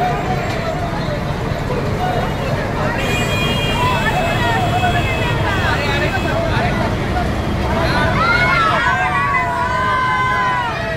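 Procession crowd shouting in many overlapping voices over the steady low rumble of a vehicle engine. The shouting grows busier near the end.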